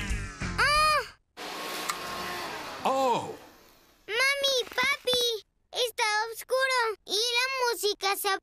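Cartoon vacuum cleaner whirring steadily, then winding down with a falling tone and dying out over about two seconds as the power cuts out. Just before it, music stops abruptly about a second in.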